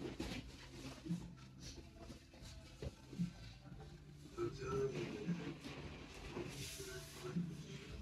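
A toddler clambering and rolling over padded seating cubes in a small room, with soft rustling and a short voice sound near the middle. Underneath runs a low hum that pulses softly about every two seconds.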